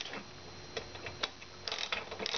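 A few scattered light clicks from metal parts and tools being handled on a parking meter, with a cluster of clicks near the end and a faint steady high tone underneath.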